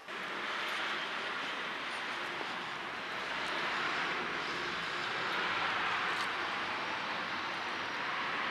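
A steady rush of passing road traffic that swells a little about halfway through, then eases.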